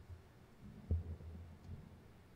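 A few dull, low thumps, the loudest about a second in, each trailed by a brief low hum.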